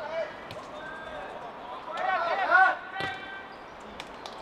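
Footballers shouting on the pitch, loudest for about a second just past the middle, with sharp thuds of the ball being kicked about half a second in and again around three seconds.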